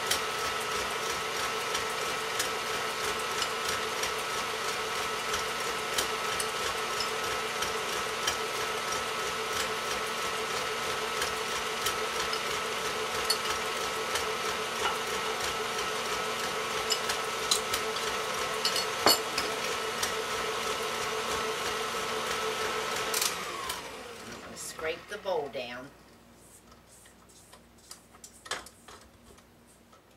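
Electric stand mixer running steadily at speed with a constant whine, beating flour into cake batter. About 23 seconds in it is switched off and the motor winds down with a falling pitch, followed by a few light clicks.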